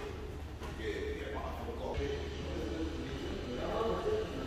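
Indistinct voices talking over a steady low hum.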